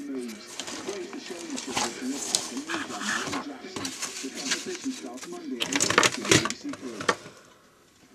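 A person's voice, muffled and without clear words, over a few knocks and rattles of objects being handled on a desk. The knocks are loudest about six seconds in.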